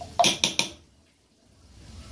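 A utensil knocking against a cooking pot of rice and peas, about four quick clacks in the first second, then nearly quiet.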